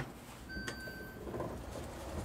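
A door being swung shut: a low rumble with a single click and a short, steady high tone about half a second in.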